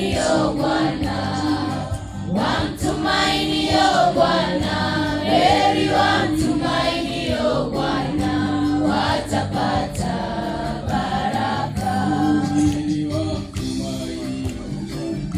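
A large group of students singing a worship song together as a choir.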